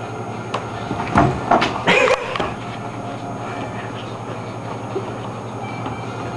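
A steady low room hum, with a short cluster of knocks, creaks and rustles between about one and two and a half seconds in as a man climbs onto a bed and settles on top of a sleeping person.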